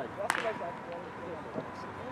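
A single sharp crack of a bat hitting a ground ball, with a short ring after it, a moment after the start; voices chatter in the background.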